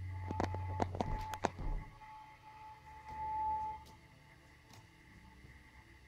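A few light, irregular knocks and taps in the first two seconds over a low hum. After that only a faint steady high tone, and it is otherwise quiet.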